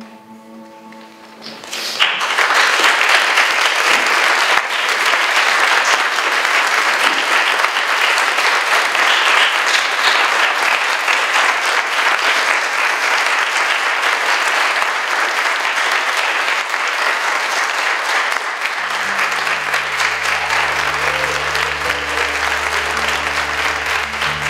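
Audience applauding, starting suddenly about two seconds in and holding steady. Near the end, sustained music notes come in underneath the clapping.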